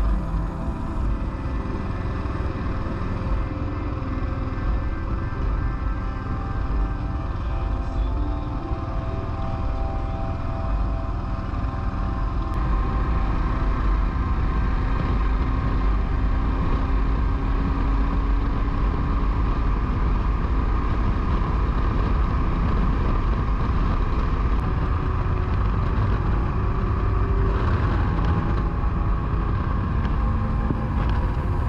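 Motorcycle running on the road with engine and wind noise on the bike-mounted camera's microphone, growing louder about a third of the way in.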